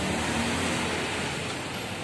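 Steady, even background noise with no distinct event, easing off slightly toward the end.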